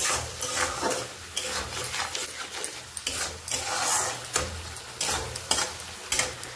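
A metal spoon stirring and scraping a tomato-and-spice masala around a kadai, in repeated strokes about two a second, with the oil sizzling underneath.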